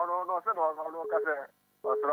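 Speech only: a person talking in a thin, narrow voice like a phone line, with a short break about a second and a half in.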